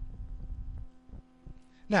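Steady electrical hum in the recording, with a low, uneven rumble during the first second.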